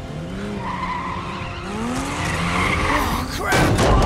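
Action-film sound effects: screeching scrapes that slide up and down in pitch over a rushing noise, as cargo and a body slide on metal. Near the end a loud rush of noise hits, the loudest moment.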